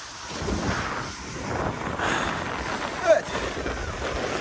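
Snowboard sliding and scraping over hard-packed snow, swelling as the edges bite through turns, with wind rushing over the microphone.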